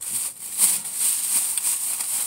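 Rain pattering on the roof of a car, heard from inside, with a plastic shopping bag rustling as items are taken out. The noise comes in abruptly and holds steady, with an irregular rustle on top.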